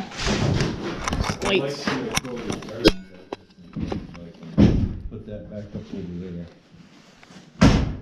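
Voices talking, with a few loud knocks and thuds: a sharp knock about three seconds in, a heavier thud near five seconds, and the loudest thud just before the end.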